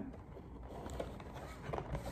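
Faint handling of a white cardboard box, with a few light taps and rustles as fingers work at its lid to open it.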